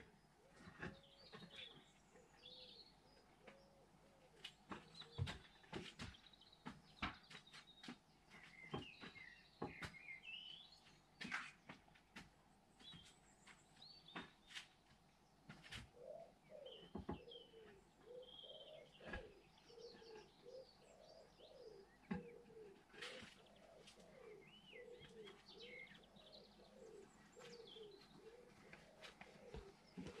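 Faint garden birdsong: small birds chirping on and off, with a pigeon cooing over and over from about halfway through. Scattered faint clicks sound throughout.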